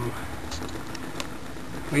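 Steady hum of a Bedini SSG battery charger pulsing its coils in solid-state mode while its rotor wheel spins freely.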